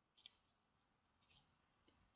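Near silence broken by three faint computer clicks, the last and sharpest near the end, as the program is set running.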